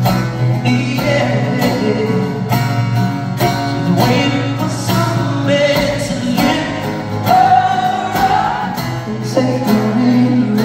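Male vocalist singing over a steadily strummed acoustic guitar, played live through a PA, with a long held note about seven seconds in.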